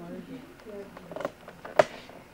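Faint murmured voices, then a few light ticks and one sharp tap or click shortly before the end, the loudest sound here.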